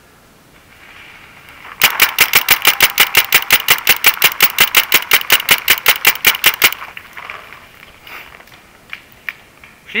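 Paintball marker firing a rapid string of shots, about seven a second for some five seconds, then stopping.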